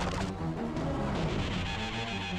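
Action film score with a steady beat, with a sudden crash of an impact right at the start.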